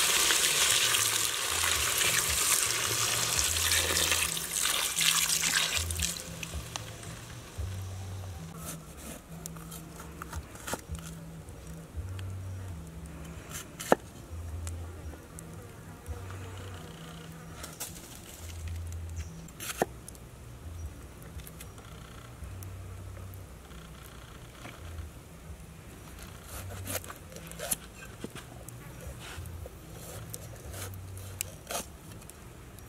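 Water poured into a hot pan of spice-coated fish pieces, a loud pouring sizzle for about six seconds. Then quieter, with scattered sharp taps of a cleaver cutting bell peppers on a cutting board, over an on-and-off low hum.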